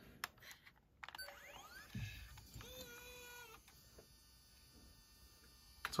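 Faint sounds from a JVC GR-DVL310U Mini-DV camcorder as tape playback starts. After about a second of near silence come a few rising glides and then a brief steady tone. A faint steady hum follows.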